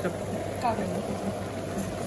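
Steady low hum and hiss of a professional kitchen's background noise, with a brief faint voice early on.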